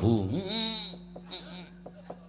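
A man's drawn-out wordless vocal cry with a trembling pitch that rises and falls, in a wayang kulit puppeteer's character voice. It is followed by a low steady hum with a few light clicks.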